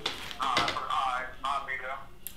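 Speech only: a man's voice talking, with no other sound standing out.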